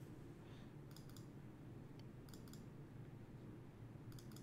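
Faint computer mouse clicks in quick pairs, about a second in and again a little past halfway, over near-silent room tone.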